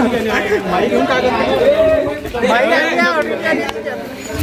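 Speech only: men talking.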